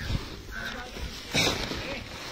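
Faint voices in the background, with a short breathy burst about one and a half seconds in.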